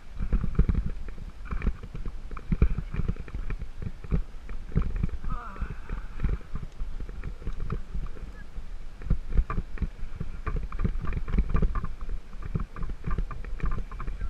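Mountain bike jolting over a rutted sandy dirt track, heard through a handlebar-mounted camera: a continuous rumble of uneven low knocks and bumps as the bike rattles over the ruts.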